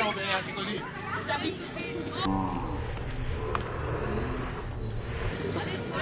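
People talking and calling out on the court. About two seconds in, the sound goes dull for about three seconds, carrying a low, drawn-out sound, before the voices come back near the end.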